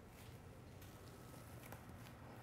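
Near silence: quiet room tone with a few faint ticks.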